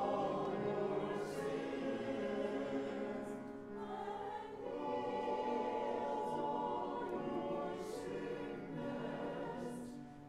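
A mixed church choir of men's and women's voices singing together, with a short dip between phrases about four seconds in.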